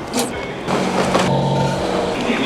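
A brief bit of ticket-machine noise with a click as a ticket is taken. About two-thirds of a second in, the sound changes to the steady hum and rumble inside a metro train car standing at a platform with its doors open.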